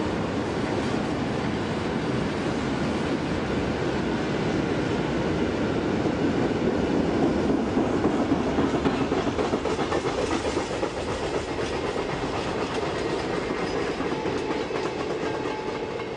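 Freight train of hopper wagons and boxcars rolling past at speed, a steady rolling rumble with repeated clicks of wheels over the rail, a little louder around the middle.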